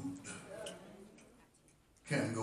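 A man's preaching voice trailing off into a pause, its echo fading in a large room, with a few faint ticks in the quiet that follows.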